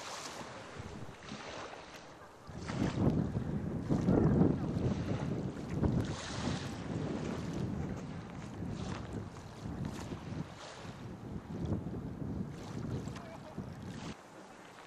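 Wind buffeting the microphone in irregular gusts, stronger from about two and a half seconds in, over the soft wash of small waves on the shore.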